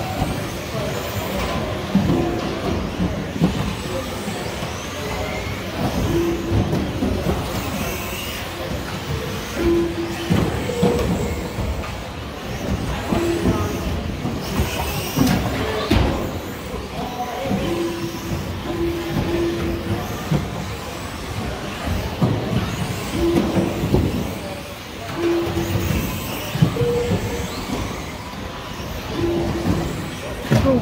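Busy din of an indoor RC race: electric RC buggies running on a carpet track, with scattered knocks, and music and voices in the hall behind them.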